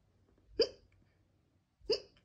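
Two short, sharp hiccups from a person's voice, a little over a second apart.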